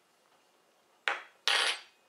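Two short clatters of metal cutlery against a plate, about a second in and half a second later, the second one longer, as a knife and fork are taken up to cut the meatball.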